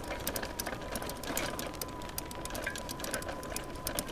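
Electric trike's motor running with a steady high whine while riding on pavement, over a fast, uneven ticking and low rolling noise.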